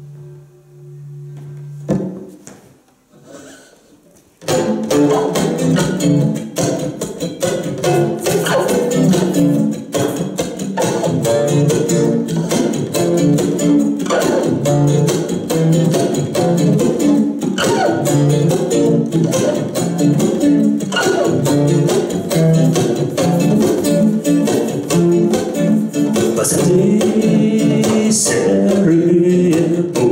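An acoustic guitar is being tuned, with a string note held and ringing, and a sharp knock about two seconds in. From about four seconds in, the acoustic guitar is strummed in a rhythmic instrumental song intro, accompanied by hand-played bongos.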